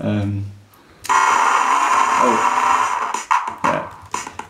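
TIDAL live-coding software playing sampled drums and recorded spoken numbers through the computer's speakers, glitched by an extreme tempo setting: a short low pitched sound at the start, then from about a second in a dense, steady buzz of rapidly retriggered samples for about two seconds, ending in a few short hits.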